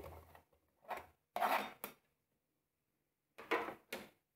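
Short scrapes and knocks of a knife scraping chopped onion and garlic off a cutting board into a multicooker's bowl, in four brief bursts with silence between, the loudest about one and a half seconds in.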